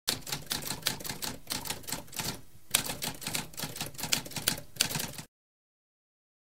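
Typewriter typing: a fast run of sharp keystroke clicks with a brief pause about halfway, stopping about five seconds in.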